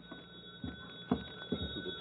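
Telephone bell sound effect ringing steadily and faintly on an old radio broadcast recording, with three soft thumps, likely footsteps, about half a second apart.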